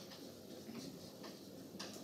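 Chalk writing on a blackboard: a few faint, short taps and scrapes as letters are written.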